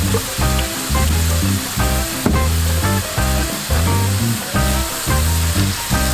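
Ground ribeye frying in oil in a cast-iron skillet, a steady sizzle as the meat browns, under background music with a steady bass beat.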